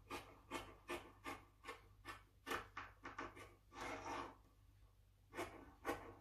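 Scissors cutting through fabric in a faint run of quick snips, about three a second, then a longer cut a little past the middle and two more snips near the end.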